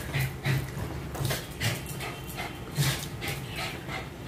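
A white pet dog making short, irregular sounds, a couple each second.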